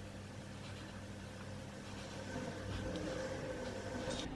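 Quiet room tone with a steady low hum, growing slightly louder in the second half.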